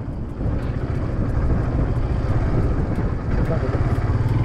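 Motorcycle engine running steadily while riding along, with wind rushing over the camera's microphone.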